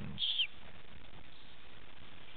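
Steady, even hiss of the recording's background noise, after a brief falling trail of the voice in the first half second.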